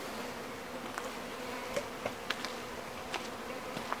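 Honeybees buzzing around open hives, a steady even hum, with a few faint clicks.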